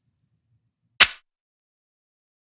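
A single heavily distorted electronic drum-machine clap, pushed with 12 dB of saturation drive so it is squashed and blown out; one sharp hit about a second in with a short tail.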